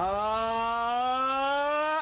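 A voice singing 'la' as one long held note in a vocal warm-up exercise, sliding slowly upward in pitch and cutting off sharply at the end.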